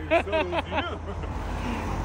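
A car on the road drawing nearer, its rumbling engine and tyre noise swelling through the second half.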